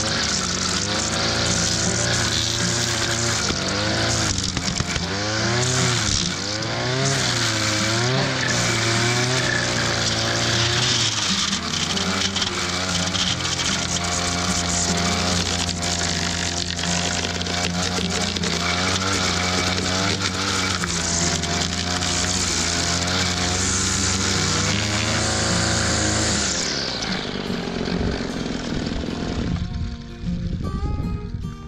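A small petrol engine runs steadily, its speed swinging up and down several times, then winds down and stops a few seconds before the end.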